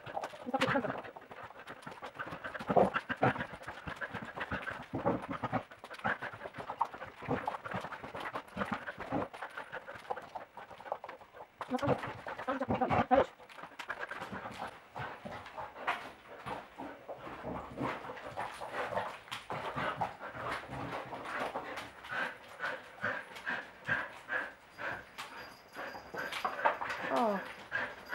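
Border collie chasing and pouncing on a flirt-pole lure: many quick scrabbling paw and claw knocks on the rug and floor, with the dog panting.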